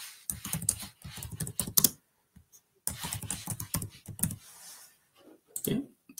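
Typing on a computer keyboard: quick runs of key clicks as a label is typed, with a short pause in the middle and a few more keystrokes near the end.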